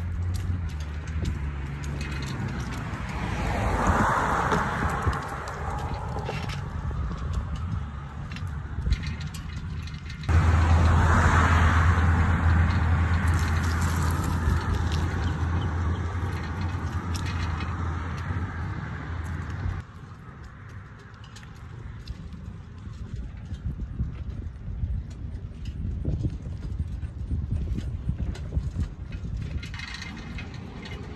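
A bicycle ride heard through a phone clamped to the handlebars: wind rumble on the microphone with scattered knocks and rattles as the mount shakes over bumps in the sidewalk. A louder low rumble starts abruptly about ten seconds in and stops abruptly about twenty seconds in.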